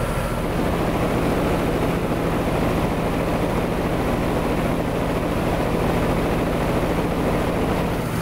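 American Standard Heritage 13 heat pump outdoor unit running in cooling: the condenser fan blows air in a steady whoosh over a constant low hum from the compressor and fan motor. The fan motor is drawing right at its rated 0.9 amps, but it seems to be operating okay.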